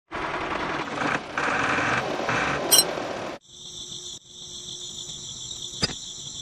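Insects chirping: a dense, hissing buzz that cuts off about three and a half seconds in, then a steady, high, cricket-like trill with a short break soon after.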